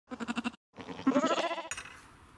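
Sheep bleating twice: a short call with a fast wavering tremble, then a longer, louder bleat that cuts off abruptly near the end.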